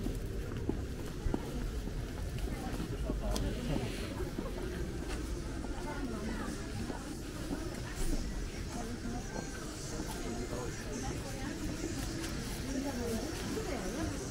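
Busy pedestrian shopping street: many passers-by talking indistinctly at once, with a few short knocks.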